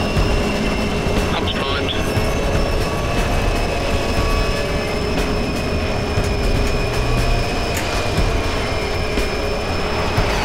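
Steady machine drone of Bloodhound SSC's rocket fuel pump being primed: a low rumble under several held whining tones.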